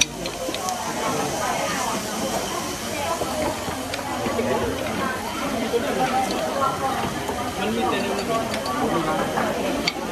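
Meat sizzling on a charcoal-heated mukata grill dome, a steady hiss, under the indistinct chatter of voices at nearby tables.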